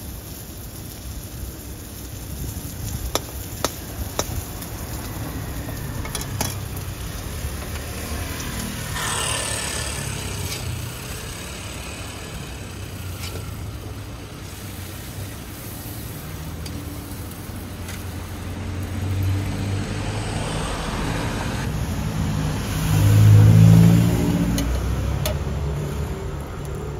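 Street traffic noise with a motor vehicle's engine passing close by, swelling loudest near the end. A few sharp metallic clicks of a spatula against a wok come a few seconds in.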